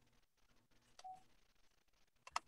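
Near silence, with a faint click and a short electronic beep about a second in.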